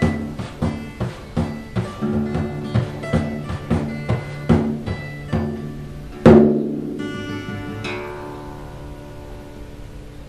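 Acoustic guitar strumming chords with a hand frame drum beating in rhythm, closing on one loud final hit about six seconds in; a last chord is then left to ring and fade away.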